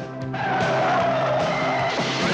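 Vehicle tyres squealing in a long skid with engine noise, starting about a third of a second in, over steady background music.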